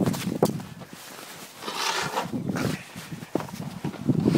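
Handling noise from a phone camera held against a ski jacket: knocks near the start and a little after three seconds, and a hissing rustle of fabric about two seconds in. Steps crunching in snow come in among them.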